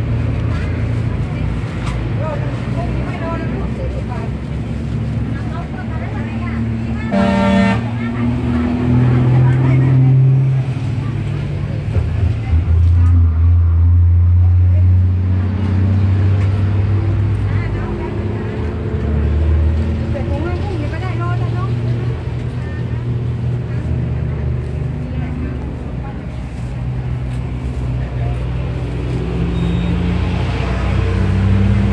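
Road traffic: vehicle engines running with a steady low rumble, and a short car horn toot about seven seconds in.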